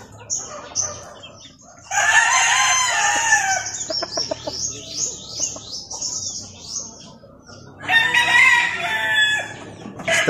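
Gamecock roosters crowing twice, once about two seconds in and again near the end, each crow about a second and a half long. Between the crows comes a run of high, quick falling chirps.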